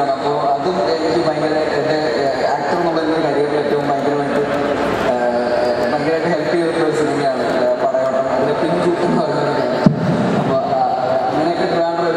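A man speaking Malayalam into a handheld microphone, amplified through a PA system. There is a single sharp click a little under ten seconds in.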